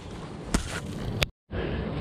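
Two sharp clicks from a plastic circuit breaker being handled in gloved hands, over a steady hiss; the sound cuts out completely for a moment just after the second click.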